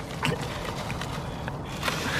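Plastic bubble wrap being squeezed and crumpled in the hands, with a few small sharp crackles, one about a quarter second in and another near the end.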